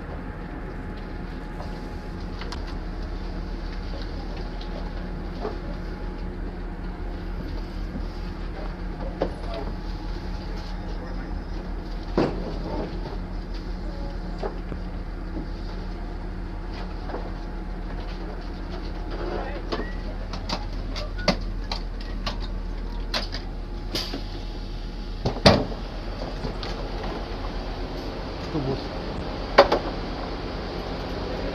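Steady low hum inside a passenger train carriage, with scattered clicks and knocks in the second half, the sharpest about three-quarters of the way in.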